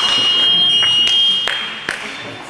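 Electronic fencing scoring apparatus sounding a steady, high signal tone that cuts off about one and a half seconds in, with the bout clock at zero: the signal for the end of the bout. A few sharp clicks follow near the end.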